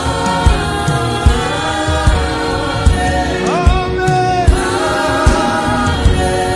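Gospel worship song: many voices singing together over a band, with a steady beat about every 0.8 seconds.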